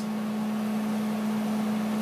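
Steady hum of a running desktop computer, its fans making an even whirr with a low steady tone under it.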